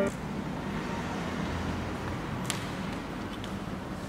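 Steady low background rumble with no clear source, with a single faint click about two and a half seconds in.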